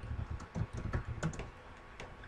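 Typing on a computer keyboard: a quick run of keystrokes that stops about a second and a half in.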